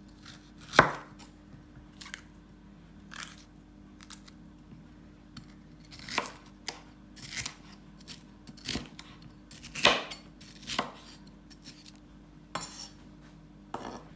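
Kitchen knife slicing a yellow bell pepper into strips on a wooden cutting board: irregular knocks of the blade through the pepper onto the board, about a dozen, loudest about a second in and near ten seconds.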